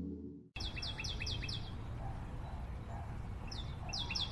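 Music fades out into a moment of silence. Then an outdoor ambience starts, a steady hiss with a songbird giving quick runs of short, falling chirps, about five a second, once early and again near the end.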